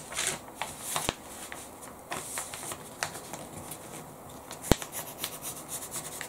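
Tracing paper rustling and crinkling as it is handled and smoothed flat by hand over a dress, with a couple of sharp taps, one about a second in and one near five seconds.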